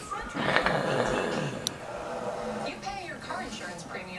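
A man's strained, groaning breath lasting about a second, just after the start: his reaction to the burn of a mouthful of ghost pepper cheese dip. Quieter voices and sound from a television carry on behind it.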